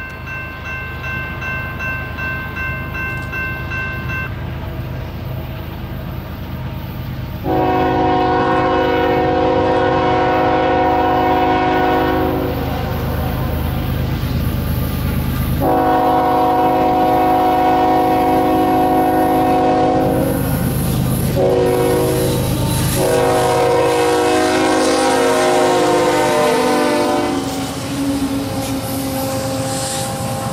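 Diesel freight locomotive horn sounding two long blasts, a short one and a long one, the grade-crossing signal, over the rumble of an approaching freight train. The horn's pitch drops as the lead locomotive passes, and the train's cars then roll by.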